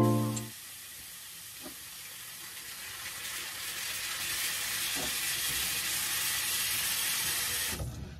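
Steady hiss of water running from a bathroom sink tap, building up over the first few seconds, holding steady, and stopping abruptly near the end.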